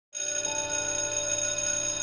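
A sustained electronic chord of steady bell-like tones that starts suddenly, with a higher note joining about half a second in, held without change until near the end.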